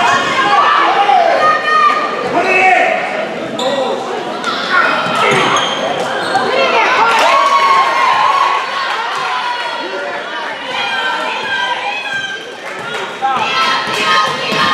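Basketball bouncing on a hardwood gym floor during play, mixed with players and spectators shouting and calling out, echoing in a large gymnasium.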